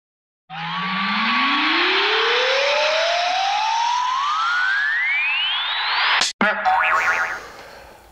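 Electronic riser sound effect: a hissing whoosh with a single tone sliding steadily upward from a low pitch to a very high one over about five seconds. It cuts off suddenly and is followed by a short ringing tone that fades out.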